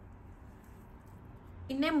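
Faint, steady room tone with nothing distinct in it, then a woman's voice starts speaking near the end.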